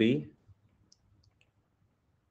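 Stylus tapping on a tablet screen during handwriting: a few faint, short clicks after the end of a spoken word.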